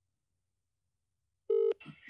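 Telephone ringback tone heard over a phone's speaker, in the Australian double-ring cadence. The first second and a half falls in the silent pause between rings. Then one buzzing tone starts and breaks off after about a quarter of a second as the call is answered, leaving a faint line hiss.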